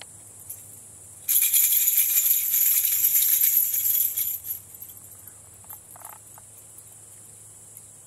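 A small handheld metal rattle shaken briskly, a bright jingling that starts about a second in and lasts about three seconds. Insects chirr steadily throughout.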